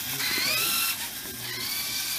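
Electric drive motors of a small kit-built robot whining as it drives across a hard floor, the whine rising in pitch in the first second as the motors speed up, then holding steadier, over a mechanical rattle of gears and wheels.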